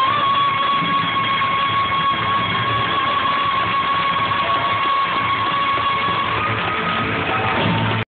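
Live rock band playing in a school hall, with an electric guitar holding one long high note over the band for most of the passage. The sound cuts off suddenly at the end.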